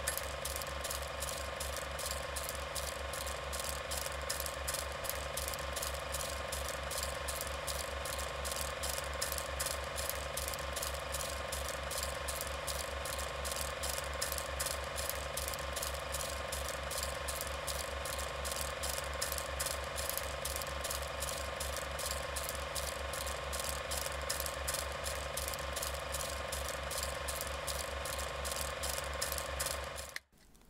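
Film projector running: a steady, rapid mechanical clatter of about four clicks a second over a constant hum.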